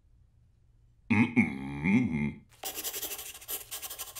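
Pencil scribbling on paper: quick, irregular scratching strokes that begin about two and a half seconds in. Just before them comes a brief wordless voice sound that rises and falls in pitch.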